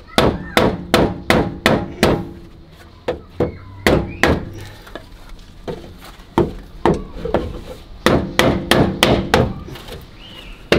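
Hammer knocking on a wooden block held against a new steel rear wheel arch panel, tapping the panel up into place. Quick runs of sharp knocks, about two or three a second, come in three runs with short pauses, and some blows leave a faint metallic ring.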